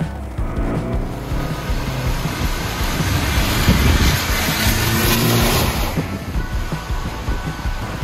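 A car driving on a rain-soaked road: tyre and spray rush swells over a few seconds and falls away near the end, with background music underneath.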